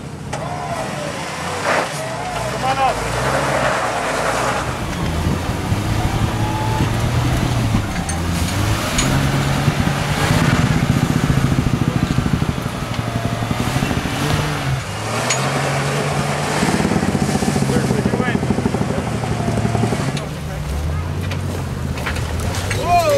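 Jeep Wrangler engine revving in low gear as it crawls over tires and sand mounds, the revs rising and falling repeatedly as the driver works the throttle, with people talking over it.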